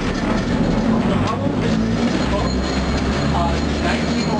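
Electric interurban car Sheboygan Light, Power & Railway 26 under way, a steady low running sound of its motors and wheels on the rails, with people talking faintly in the background.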